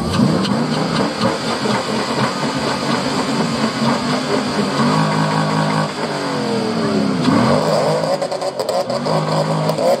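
Chevrolet C5 Corvette's 5.7-litre V8 revved repeatedly at standstill. Each rev climbs, holds briefly, then falls back toward idle, several times over.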